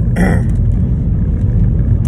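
Steady low rumble of a car's engine and road noise inside the cabin while driving, with a brief vocal sound just after the start.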